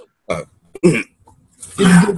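A man's throat sounds just after a swig from a bottle: two short coughs, then a longer, louder throat-clearing near the end.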